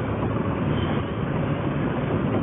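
Steady road and engine noise inside a car cruising at highway speed, with a low, even hum under it.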